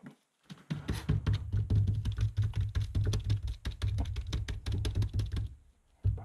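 Rapid, steady tapping on a small planter mold filled with concrete, done to settle the stiff Cheerio-laden mix and bring up air bubbles. It starts just under a second in and stops shortly before the end.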